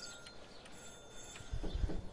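Doorbell pressed and ringing faintly inside the house: a thin, steady tone for about a second and a half. A few low knocks follow near the end.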